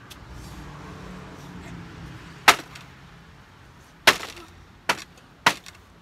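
Four sharp wooden cracks as a tool strikes the boards of a wooden frame: the first and loudest about two and a half seconds in, then three more over the next three seconds. A low rumble fades out during the first half.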